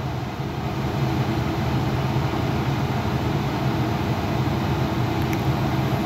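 A steady low hum under an even hiss from a running machine, with no change in pitch or level.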